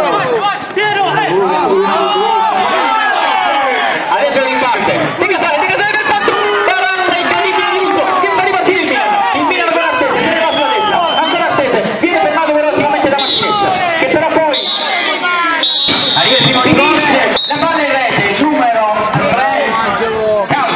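Many voices of spectators and players talking and shouting over one another, with no single clear speaker. A few sharp knocks come in the later part.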